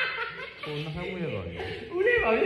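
Men talking and chuckling in casual conversation.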